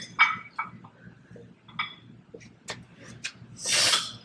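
Scattered light clicks and small knocks of things being handled, with a short hiss-like rush near the end.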